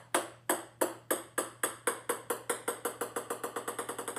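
Small plastic ball, a ping-pong ball, bouncing on a hard wooden floor: a run of light knocks that come faster and faster and grow softer as it settles.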